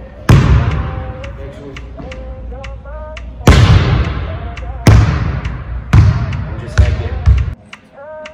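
A basketball hitting the hardwood floor and backboard of a gym: several loud, irregularly spaced hits, each echoing through the hall.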